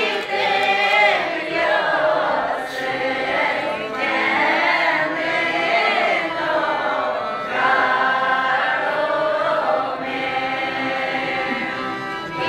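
Udmurt folk ensemble, mostly women's voices, singing a folk song together in phrases, with an accordion playing along.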